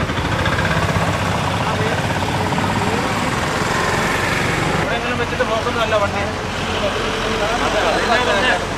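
Street traffic, with a vehicle engine running steadily at idle. People's voices talking in Malayalam come in over it about five seconds in.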